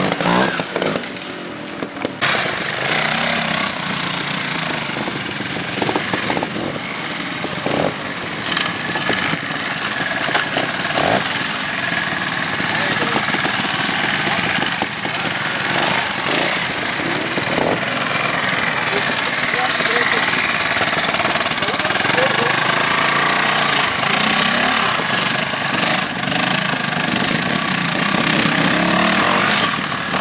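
Trial motorcycle engines running and revving up and down as riders pick their way over rocks and roots, with the engine note rising and falling in places.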